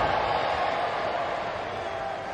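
Stadium crowd noise, a steady roar of many voices slowly fading, as the crowd reacts to a near miss on goal.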